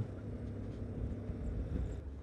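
Low, steady rumble of a Yamaha Ténéré 250's single-cylinder engine mixed with wind and road noise while riding, picked up by the bike-mounted action camera's microphone.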